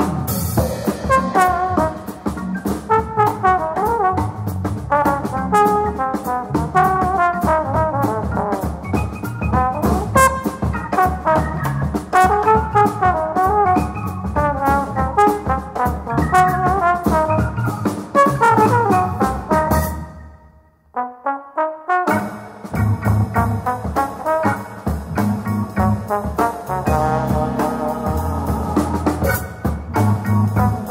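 Jazz trio of trombone, Nord Stage 2 keyboard and drum kit: the trombone plays a fast, busy melodic line over drums and keys. About twenty seconds in the band stops short and a lone falling glide is heard before the full band comes back in.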